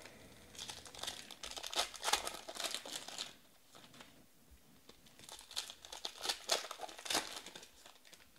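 Foil wrapper of a Panini Prizm Draft football card pack crinkling as it is handled and torn open, in two bursts of crackling: the first about half a second in, the second around five seconds in.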